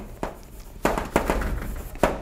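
Chalk writing on a chalkboard: a run of sharp taps and short strokes as a word is written, the taps clustered around the middle.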